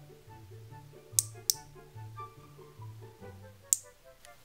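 Background music with a repeating bass line. Three sharp plastic clicks stand out over it, two close together about a second in and one near the end, as small plastic toy pieces are snapped together by hand.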